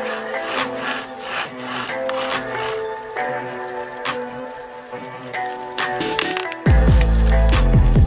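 Background music: a melodic track of steady sustained notes that turns much louder with a deep bass coming in near the end.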